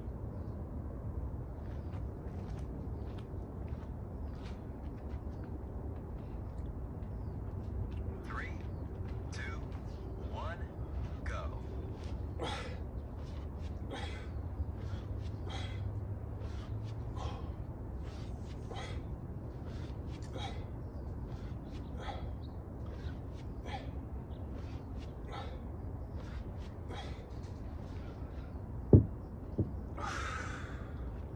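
Rhythmic sharp breaths, close to one a second, in time with two-handed kettlebell swings. Near the end the kettlebell is set down on concrete with a sharp clank, then a smaller knock.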